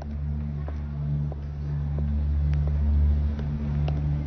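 A steady low droning hum of a few sustained deep tones, swelling slightly towards the middle, with a few faint clicks: a dark ambient music bed under a drama scene.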